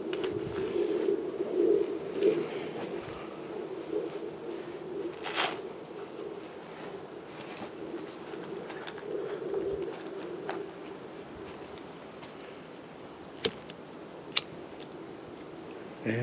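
Quiet handling of a small alcohol camp stove as it is lit, with a faint wavering hum, a soft knock about five seconds in and two sharp clicks about a second apart near the end.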